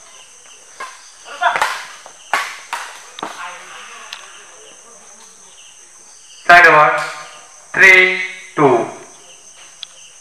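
Badminton rally: several sharp racket strikes on the shuttlecock in the first three seconds, then three loud shouts a little past the middle. A steady high insect chirring runs underneath.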